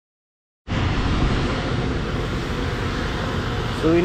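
Silent for about half a second, then a steady outdoor rumble and hiss with no clear engine note, heaviest in the low end.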